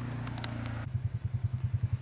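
A motor vehicle engine idling, heard as a low, even chugging of about twelve pulses a second that comes in near a second in, after a steady low hum and a few sharp handling clicks.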